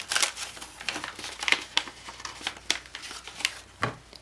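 A sheet of letter-size paper rustling and crinkling as it is folded and creased by hand, with irregular short, sharp crackles.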